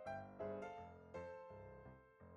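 Quiet background music of slow keyboard notes, about four struck notes in two seconds, each fading before the next.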